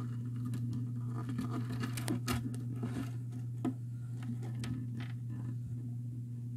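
Close-up scratchy handling noise and sharp clicks from a small microphone on a cord being moved against plastic aquarium plants inside an empty glass tank. The sharpest clicks come about two seconds in and again near four seconds, over a steady low electrical hum.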